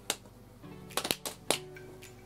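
Fists slapping into open palms in a few sharp smacks, the count of a rock-paper-scissors throw, over faint background music.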